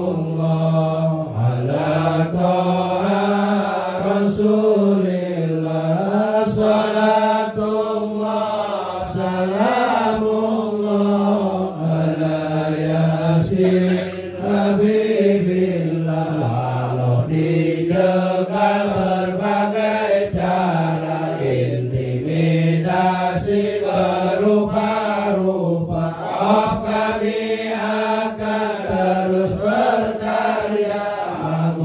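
A man's voice chanting an Islamic sholawat in Arabic, in long drawn-out phrases whose pitch slowly rises and falls.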